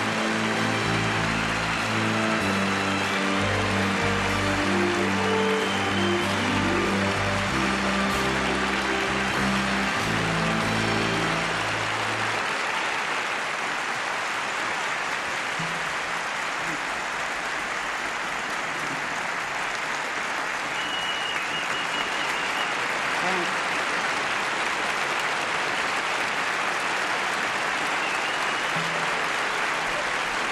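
Sustained applause from a large theatre audience, a standing ovation, with music playing over it for about the first twelve seconds; then the music stops and the applause carries on steadily.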